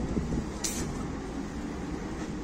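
Steady low rumble of city street traffic, with a short sharp hiss about two-thirds of a second in.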